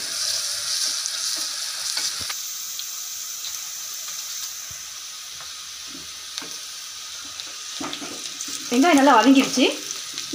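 Sliced onions frying in oil in an aluminium pressure cooker, sizzling steadily, with a wooden spatula stirring and scraping the pan. The sizzle is strongest for the first two seconds or so, then settles lower. A voice comes in near the end.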